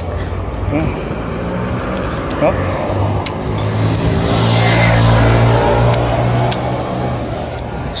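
Wind and road rumble while riding a bicycle. A motor vehicle's engine hum swells to a peak about halfway through and then fades as it passes. A few light clicks come from the bicycle's trigger shifter being tapped through the gears.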